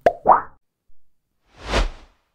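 Editing transition sound effects: a click and a short pitched plop right at the start, then a rush of noise that swells and fades near the end.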